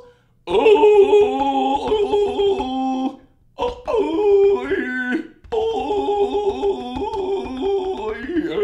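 A man's voice belting long, wordless sung notes in three drawn-out phrases, the pitch stepping down and sliding between held notes, with short breaths between phrases about three and five and a half seconds in.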